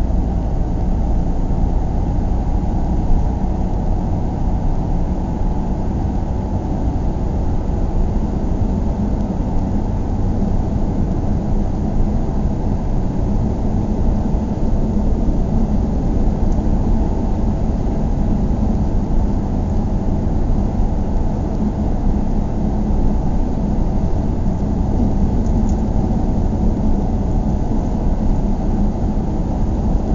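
Car driving along a road, heard from inside the cabin: a steady low rumble of engine and tyres that holds constant throughout.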